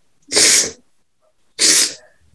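A woman sobbing: two short, sharp, breathy sobs a little over a second apart.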